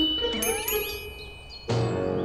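Cartoon sound effects for an animated intro: bright chime-like dings and a rising, gliding squeak in the first half. Near the end a sudden hit leads into a keyboard music chord.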